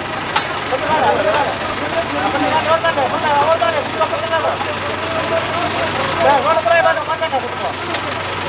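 Men talking over the steady hum of an idling truck engine, with repeated sharp strikes of a long-handled pick digging into packed earth and broken bricks.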